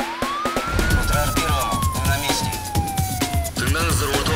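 News-programme intro jingle: a siren sound effect sweeps up quickly in the first second, then slides slowly down over about two and a half seconds, over electronic music with a steady beat.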